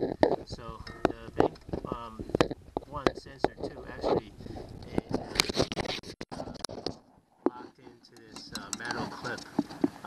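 Low, mumbled, half-whispered speech with scattered sharp clicks and light scrapes from hands handling a plastic oxygen-sensor wiring plug.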